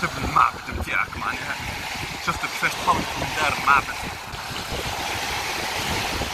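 Steady wind and surf noise, with short snatches of voices in the first few seconds.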